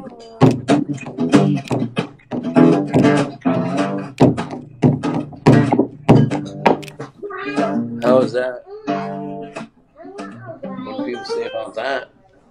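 Acoustic guitar strummed in quick, even strokes, about three a second, with a man's voice singing along.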